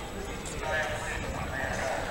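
Indistinct chatter of people's voices in an open outdoor area, over a steady low rumble on the microphone.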